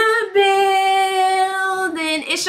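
A woman singing one long note at a steady pitch, held for about a second and a half after a short sliding note at the start.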